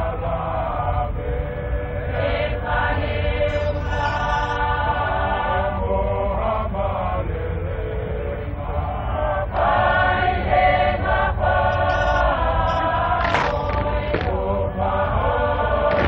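Tongan lakalaka chant: a large group of voices singing sustained notes in harmony, in phrases, louder from a little over halfway. A steady low rumble sits underneath.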